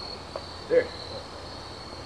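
Insects chirring, a steady high-pitched drone.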